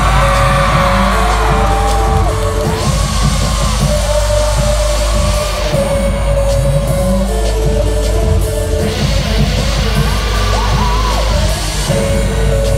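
Live K-pop concert music played loud through an arena PA, with a heavy steady bass, and sliding vocal lines with yells and whoops over it.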